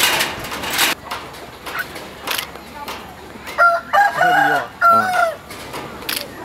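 A rooster crowing: a run of several pitched notes lasting about a second and a half, starting about three and a half seconds in. Before it, in the first second, there is a burst of rushing noise.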